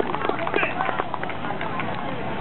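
Chatter of an outdoor crowd of onlookers, several voices overlapping, with scattered short taps and clicks.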